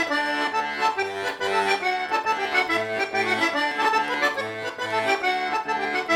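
Diatonic button accordion (organetto) playing a tarantella solo: a quick melody over bass notes pumping in an even, regular beat.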